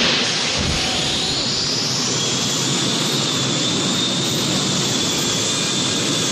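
The 'Whispering Giant' pulling tractor's gas turbine engines running at full power during a pull. It is a loud, steady jet roar, with a high whine that rises over the first couple of seconds and then holds steady.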